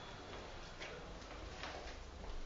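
Faint sharp taps, a few spaced roughly a second apart, over a low steady room rumble.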